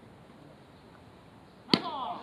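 A baseball bat hitting a pitched ball once near the end, a sharp crack with a short ringing tail.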